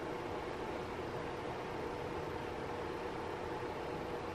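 Steady room noise: an even hiss with a faint, constant hum underneath and no distinct events.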